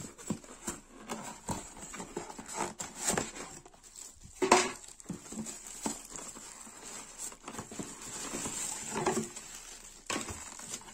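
Packaging being handled: a cardboard box and polystyrene packing knocked and scraped, and a plastic bag rustling as the wrapped machine is pulled out, with irregular knocks throughout, the loudest about four and a half seconds in.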